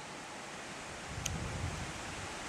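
Wind buffeting the microphone over a steady outdoor hiss, with the low rumble picking up about a second in; a single faint click comes just after.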